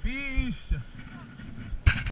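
A man's voice calls out a drawn-out "oh", with a couple of shorter vocal sounds after it over low rumbling knocks. Near the end there is a sharp knock as the action camera is moved.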